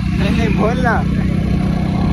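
Motorcycle engine running steadily, with a fast even pulsing, while the bike carries two riders.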